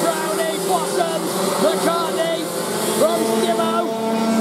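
A pack of 125cc TaG two-stroke kart engines racing together, several notes overlapping and rising and falling in pitch as the karts come off and back onto the throttle.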